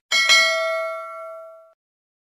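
Notification-bell sound effect: a bright bell ding, two quick strikes that ring on and fade away over about a second and a half.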